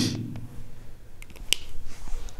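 A few short, sharp clicks as pens are handled, the loudest about a second and a half in, as the black marker is put away and a green pen is picked up.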